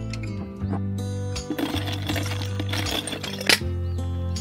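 Instrumental background music, over which ice cubes clatter and rattle in a plastic hard cooler for about two seconds in the middle, ending with one sharp clack.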